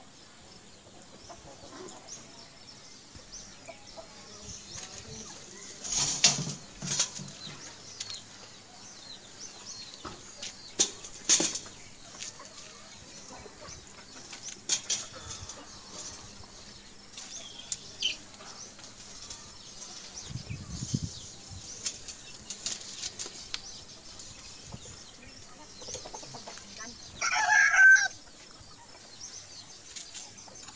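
Chickens in the background, with a rooster crowing once near the end, the loudest sound here. A few sharp clatters come in the first half.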